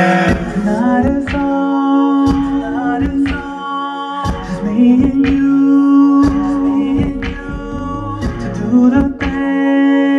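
Music: a singer holding long, gliding notes without clear words, over a hip-hop beat with regular drum hits.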